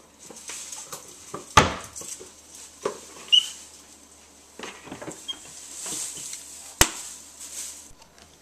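A plastic spice shaker being shaken and tapped over a plate as chili powder is sprinkled on: scattered knocks and soft shaking sounds, with one sharp click near the end.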